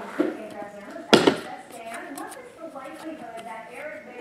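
Trading cards being flipped through and handled by hand, with one sharp snap about a second in, over low background talk.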